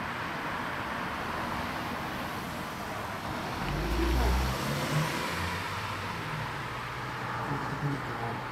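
Steady noise of road traffic on a city street, with a deep rumble swelling briefly about halfway through.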